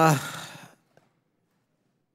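A man says a voiced "uh" that trails into a sigh, a breathy exhale close to the microphone that fades out within the first second.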